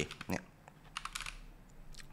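Typing on a computer keyboard: a few quick, light key clicks about a second in.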